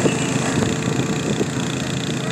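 Small ride-on tandem asphalt roller's diesel engine running steadily as the machine drives across freshly laid asphalt.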